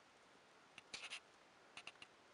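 Near silence in a small room, broken by a few faint, short scratching clicks about a second in and a couple more near the end.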